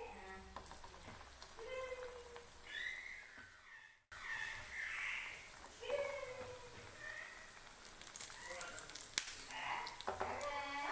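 Dough balls deep-frying in hot oil, a steady sizzle with light crackles, under faint voices in the background. The sound drops out briefly about four seconds in.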